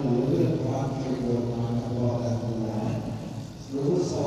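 Indistinct voices talking over a steady low hum, with no clear words, dropping briefly near the end.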